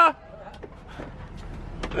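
Low steady engine and road rumble inside a minibus van's cabin, with faint voices over it.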